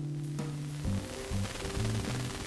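Background lounge music: held notes over a low, pulsing beat, with a faint hiss.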